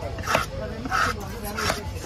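A dog barking three times in quick succession, short sharp barks about two-thirds of a second apart. A single cleaver chop into the wooden block comes with the first bark.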